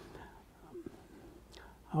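Quiet pause in a man's talk: low room noise with a faint short sound about a second and a half in, then his voice starts again right at the end.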